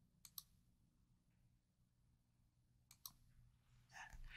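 Near silence with faint clicks: a pair about a third of a second in and another pair about three seconds in.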